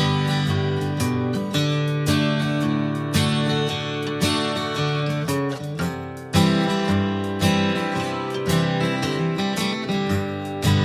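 Background music led by a strummed acoustic guitar, with steady, regular strums and changing chords.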